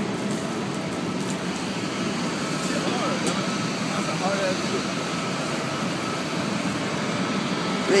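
Steady, unbroken noise of aircraft and ground-service engines running on an airport apron, with a faint steady high tone through it.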